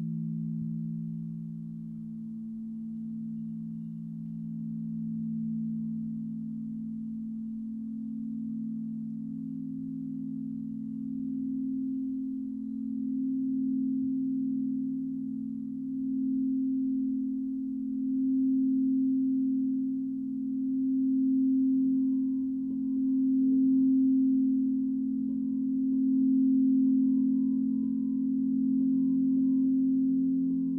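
Several frosted quartz crystal singing bowls ringing together, played with mallets. Their long low tones overlap and pulse in slow swells. A higher ringing joins about two-thirds of the way in, and the sound grows louder toward the end.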